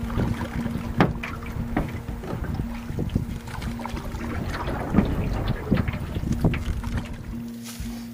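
Paddling a canoe: paddle strokes splashing, with irregular knocks against the hull and wind on the microphone. Background music with one held note plays throughout.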